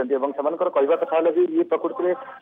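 Speech only: a news narrator reading continuously in Odia.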